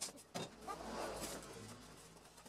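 A sheet of white board being handled and slid on a metal work surface: two light taps, then a drawn-out scraping rustle that slowly fades.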